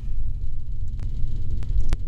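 Steady low rumble of background noise, with a few faint clicks about a second in and near the end.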